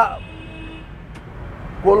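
A man's speech breaks off at the start and resumes near the end. In the pause there is a steady low background rumble and one faint click.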